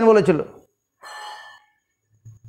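A man speaking in Bengali stops about half a second in. About a second in comes a short, hissy intake of breath lasting about half a second.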